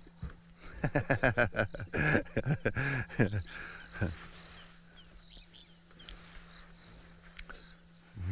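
A man laughing in a run of short, quick bursts, then dying away; faint bird chirps follow.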